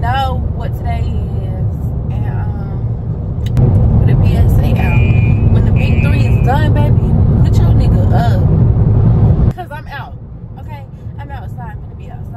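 Road and engine noise inside a moving car's cabin: a steady low rumble under a woman's voice. It gets louder a few seconds in and drops off suddenly about two thirds of the way through.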